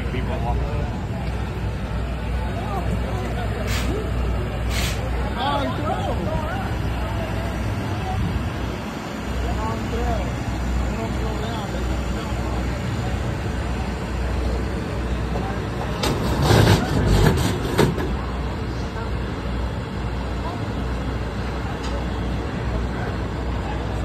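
Busy racing pit background: a steady low rumble with indistinct voices nearby, two short knocks about four and five seconds in, and a louder noisy burst lasting about two seconds past the middle.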